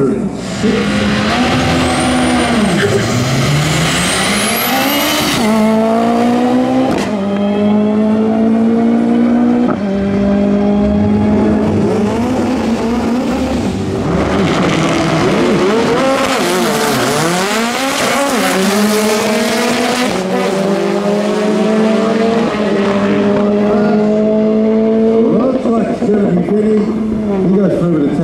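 Drag-racing car engines accelerating hard down the strip. The pitch climbs and drops back at each gear change, over and over.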